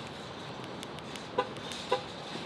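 A car's horn chirps twice, short and about half a second apart: the lock confirmation as the car is locked with its key fob. Steady outdoor traffic noise runs underneath.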